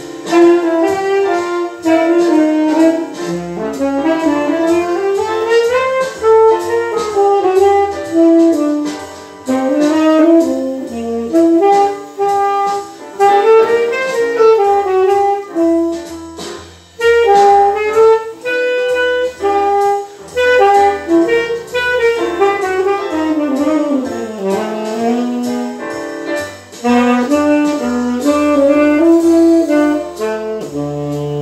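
Saxophone playing a flowing jazz melody line with smooth glides between notes, over a recorded backing track with a bass line underneath.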